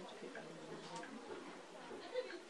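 Quiet speech, a person's voice talking softly.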